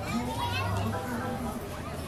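Children's voices, chattering and calling out with high, quick rises and falls.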